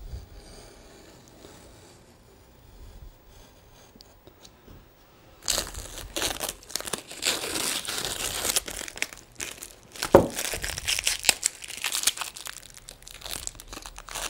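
Brown plastic packing tape being peeled off watercolour paper and crumpled in the hand, a loud crackling crinkle with sharp ripping strokes, starting about five seconds in after a few quiet seconds.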